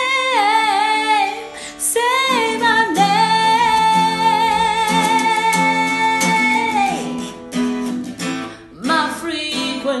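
Woman singing a soft ballad to her own fingerpicked Taylor acoustic guitar, in long drawn-out notes with vibrato. A short phrase gives way to one long held note from about three seconds in to about seven, then the guitar carries on alone briefly before the voice comes back near the end.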